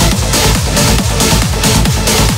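Uplifting trance music at 138 bpm: a steady four-on-the-floor kick drum, a bit over two beats a second, under a rolling bassline and bright synths.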